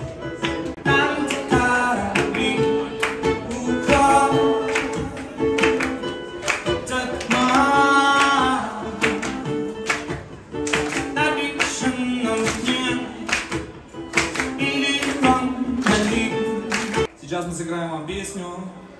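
Live rock band playing: a male lead voice sings over strummed guitars, heard from the audience in a club.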